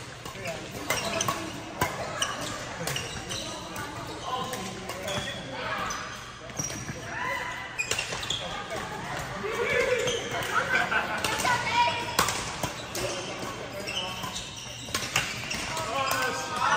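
Badminton rally in a large echoing hall: repeated sharp smacks of rackets hitting the shuttlecock, with chirping squeaks of court shoes on the floor as the players move.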